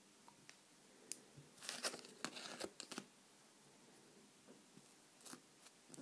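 Faint scraping of a plastic scraper card across a metal MoYou London nail stamping plate, clearing off excess polish: a few short scratchy strokes about two seconds in, with light clicks and taps before and after.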